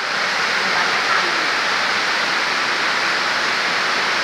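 Rain falling steadily, a loud, even hiss.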